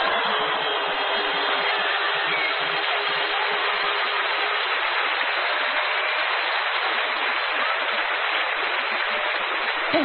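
Audience applauding, a steady, sustained ovation.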